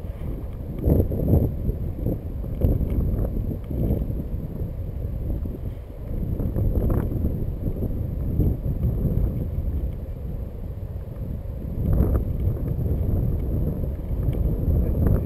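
Wind buffeting the microphone of a camera on a moving bicycle: a low, rumbling rush that rises and falls in gusts, loudest about a second in and again near the end.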